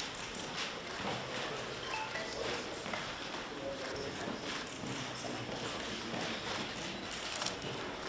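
Press cameras' shutters clicking in quick, irregular bursts over a steady background hubbub of the room.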